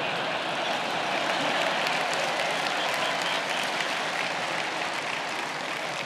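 Congregation applauding steadily after a joke, easing off slightly near the end.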